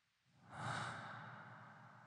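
A faint, breathy exhale like a sigh. It swells up quickly about half a second in, then fades away slowly over the next second and a half.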